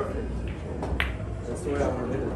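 Pool balls clicking sharply on a 9-ball table: a loud click at the start and a second click about a second later, over a murmur of voices.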